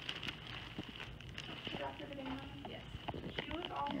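Clear plastic bag crackling and rustling in irregular short clicks as gloved hands wrap and twist it, with faint voices in the background.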